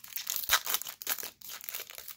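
The foil wrapper of a Pokémon TCG Evolving Skies booster pack is torn open and crinkled by hand. It makes an irregular run of sharp crackles and rustles, loudest about half a second in.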